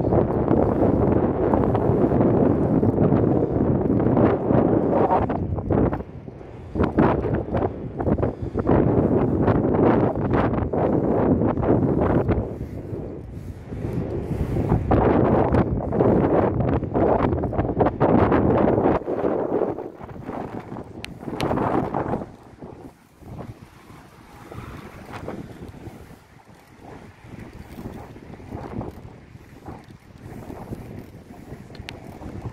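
Wind buffeting a handheld phone's microphone in irregular low gusts. It is strong for most of the time, with a short lull about six seconds in, and eases off well before the end.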